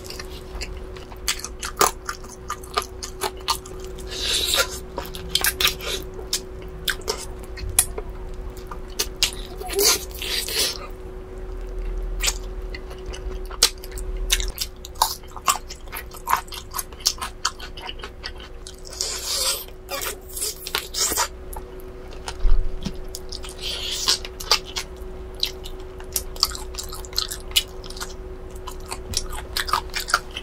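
Close-miked chewing and biting of roasted bone-in chicken: moist clicks and smacks with bursts of louder mouth noise every few seconds. A faint steady hum sits underneath.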